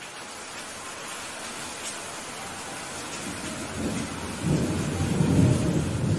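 Steady rain hiss with a low roll of thunder that swells in the second half and is loudest near the end.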